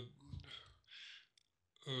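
A man's hesitation pause in speech: the tail of an 'äh', a faint breath and a small mouth click, then another 'äh' near the end.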